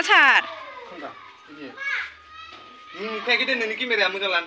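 High-pitched voices, like children's, talking and calling out. The loudest is a shout that slides down in pitch right at the start, with more voices chattering near the end.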